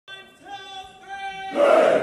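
A group of voices shouting together, with a loud yell near the end, over short held tones at a steady pitch.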